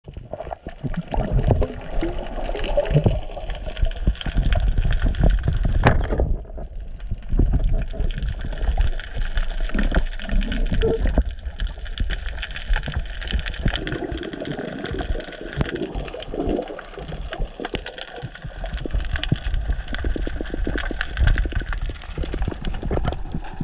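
Underwater water noise heard through an action camera's housing, a low rumble with frequent small clicks and knocks as a speared fish is handled on the spear shaft and line, over a faint steady hum.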